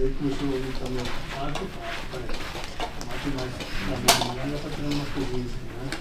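Low talking in the background, with one sharp metallic click about four seconds in.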